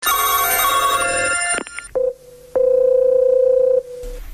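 A telephone ringing for about two seconds and stopping suddenly, followed by a short beep and then a steady single tone on the phone line lasting just over a second.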